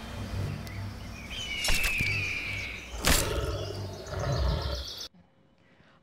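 Sword-stab sound effects over outdoor ambience with a low rumble: two sharp hits about a second and a half apart, with a slightly falling ringing tone between them, then silence for the last second.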